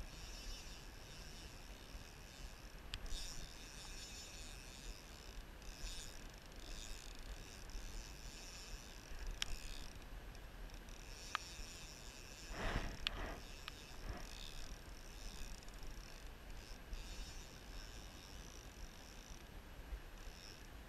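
Faint, steady river and outdoor noise on a camera microphone, with a low rumble, a few sharp single clicks, and a short scraping rustle about thirteen seconds in.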